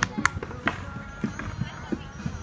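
Indistinct voices of people outdoors, with a few sharp clicks near the start.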